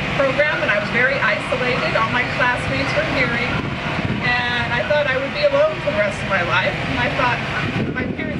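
A person's voice talking continuously over a steady low background rumble.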